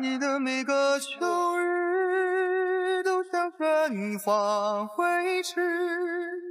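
Background music: one voice singing long, wavering held notes.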